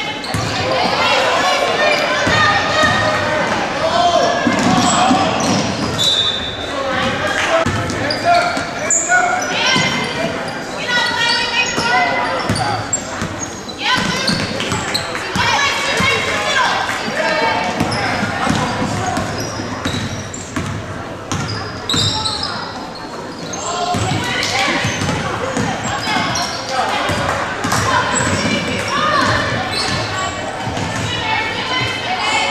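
A basketball dribbling on a hardwood gym floor during a game, with players and spectators shouting and talking throughout, echoing in the large gymnasium.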